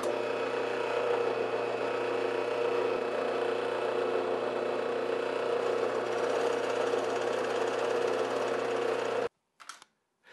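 Drill press motor running at a steady speed as it bores into a wooden block, first a small pilot hole and then a countersink with a counterbore bit. The hum cuts off suddenly near the end.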